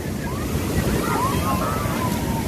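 Sea surf washing in over the sand at the water's edge, a steady rushing wash, with wind on the microphone.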